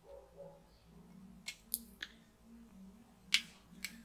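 A handful of faint, sharp clicks as a magnetic USB charging cable and a plastic 4G mobile hotspot are handled and the magnetic plug is fitted to the device, over a faint steady hum.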